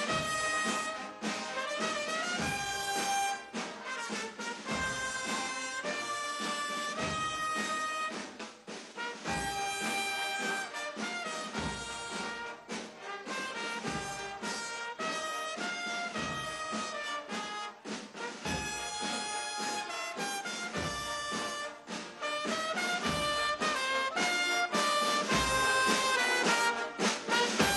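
Military brass band playing a slow piece of held, stepping brass notes.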